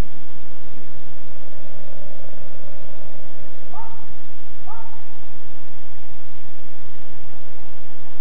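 Loud, steady hiss of background noise, with two short rising calls a little under a second apart near the middle.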